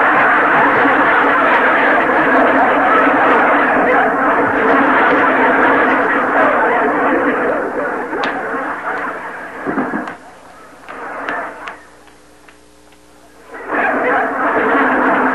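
Studio audience laughing loudly and continuously, dying away about ten seconds in.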